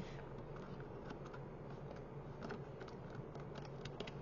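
Faint, scattered light clicks and taps of a pick tool and fingers working against a cardstock paper house, over a steady low hum.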